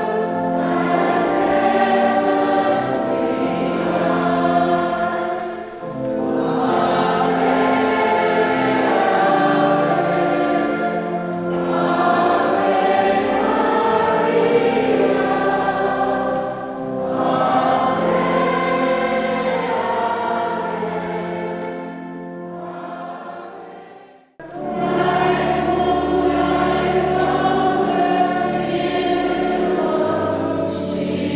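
Congregation singing a hymn together in a reverberant church, in phrases that break every five or six seconds. About three-quarters of the way through the singing fades away to a brief near-silence, then comes back loud a moment later.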